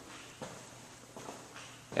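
A few faint footsteps on a hard floor, spaced irregularly, over quiet room tone.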